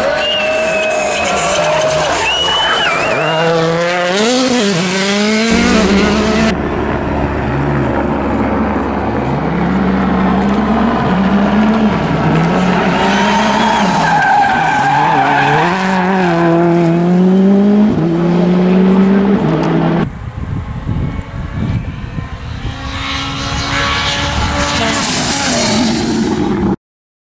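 Turbocharged four-cylinder World Rally Car engines, among them a Citroën C3 WRC, driven hard on a tarmac stage. The engine pitch repeatedly climbs and drops with gear changes and throttle lifts. The sound changes abruptly about five seconds in and again about twenty seconds in, where one car's pass gives way to the next.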